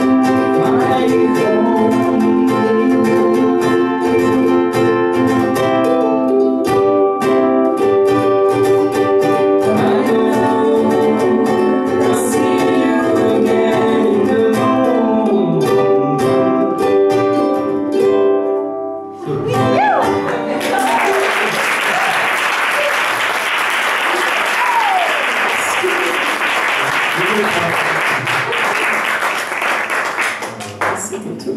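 Two ukuleles strummed and plucked with a man and a woman singing, the song closing a little over halfway through. After a brief pause, an audience applauds steadily to the end.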